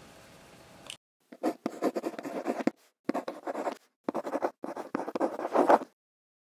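Pen scratching on paper, a handwriting sound effect: four spells of quick scribbled strokes with short gaps between them, starting about a second and a half in and stopping just before the end.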